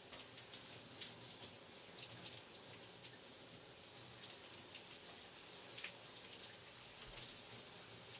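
Shower running: a steady hiss of water spray with small spattering droplets.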